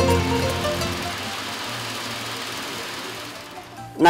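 Background music fades out over the first second, giving way to a steady rushing noise with a low hum from a motorized maize sheller as cobs are fed in. The noise drops away near the end.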